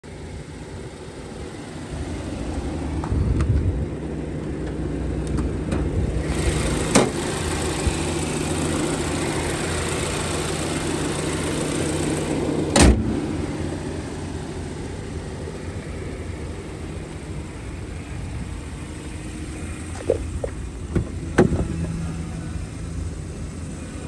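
BMW X3 engine starting about two seconds in and then idling steadily, with more hiss for several seconds while heard up close in the open engine bay. One loud thump a little past halfway, and a few clicks and knocks near the end.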